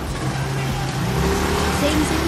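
Street traffic at close range: motor scooters and a small truck running, a steady low engine hum with traffic noise over it.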